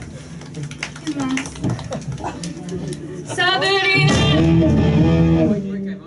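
A live band's electric guitar and keyboard on stage: a few scattered notes and clicks, then a wavering note and a loud sustained chord from about four seconds in that breaks off just before the end.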